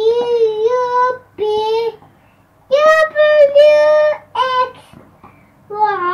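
A young child singing wordlessly in a high voice: several held notes, the longest about a second and a half, with short breaks between them.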